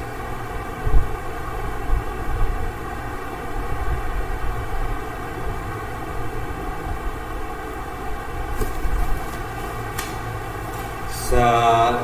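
A steady hum of several held tones over a low rumble, with a short knock about a second in; a man begins singing sargam syllables just before the end.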